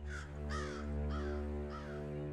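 A crow cawing four times, about half a second apart, over a low steady drone.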